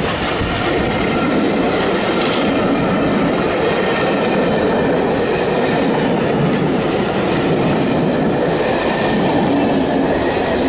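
Steady, loud wheel-on-rail noise of a train of Pullman coaches running past.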